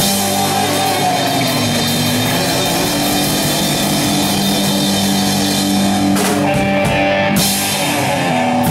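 Live rock band playing: electric guitars holding sustained chords over a drum kit, loud and steady, with two cymbal crashes near the end.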